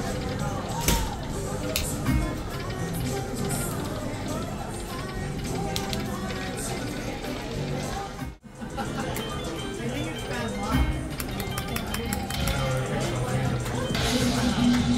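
Dragon Link video slot machine sounds: reel-spin music and electronic chimes, mixed with casino chatter. A brief dropout comes about eight seconds in.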